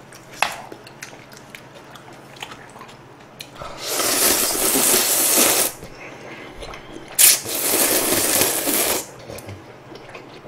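Person slurping instant ramen noodles: two long slurps of about two seconds each, in the second half. A few light clicks of chopsticks against the bowl come before them.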